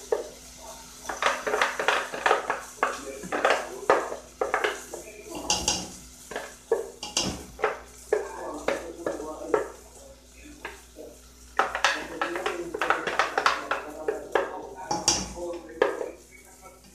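Plastic blender jar clattering and knocking against the rim of an aluminium pan as thick blended cassava broth is tipped and shaken out of it. The knocks come in two busy spells, one early and one near the end, with quieter pouring between.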